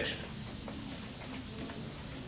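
Whiteboard eraser rubbing steadily across a whiteboard, wiping off marker writing.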